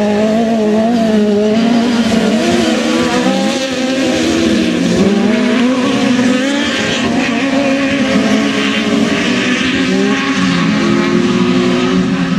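Several autocross buggy engines running hard together on a dirt track, their pitches wavering up and down as the drivers work the throttle.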